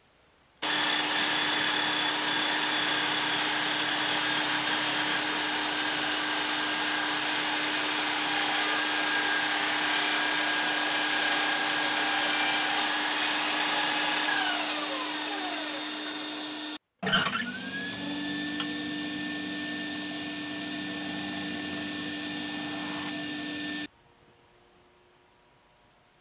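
Table saw motor running steadily, then spinning down with falling pitch after being switched off. After a break, another power-tool motor starts up, rises quickly to speed and runs steadily.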